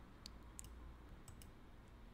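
A few faint computer mouse clicks, about five short ticks spread over two seconds, against near-silent room tone.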